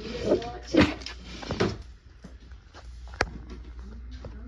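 Things being handled in a cupboard: a few short bumps and rustles in the first two seconds, then a single sharp click about three seconds in.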